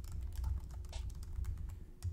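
Typing on a computer keyboard: a quick, irregular run of light key clicks over a low steady hum.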